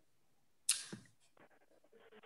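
Near silence broken by one short, sharp noise about two-thirds of a second in that dies away within a third of a second.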